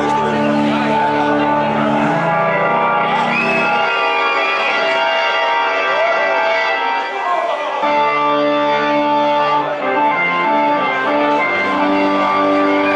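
Live rock band playing: an organ holds sustained chords over bass guitar. About four seconds in, the low bass drops out and the organ chords carry on alone with a few sliding tones. The bass comes back in near eight seconds.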